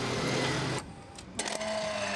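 Shop background noise that drops away suddenly, then a click about one and a half seconds in and a steady mechanical hum from a self-order kiosk as a card goes into its card slot.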